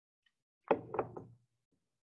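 Three quick knocks in close succession, starting about three-quarters of a second in and dying away fast.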